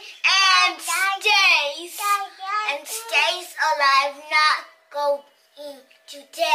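A young child singing loudly in a high, sing-song voice, with gliding pitch and no clear words. The singing gets quieter and more broken near the end.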